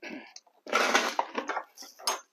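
Wooden cedar double doors being unlatched and pulled open: a scraping rush lasting under a second, followed by a few light clicks from the latch and doors.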